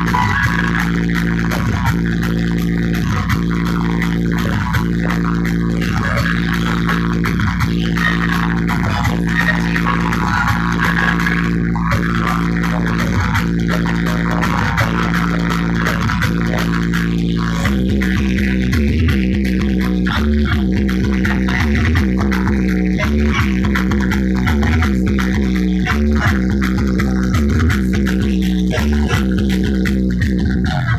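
Loud DJ dance music with deep held bass notes under a steady beat. About eighteen seconds in, the bass line changes to a choppier, pulsing pattern.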